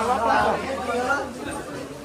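Chatter of several people's voices in a busy indoor market, with no clear words.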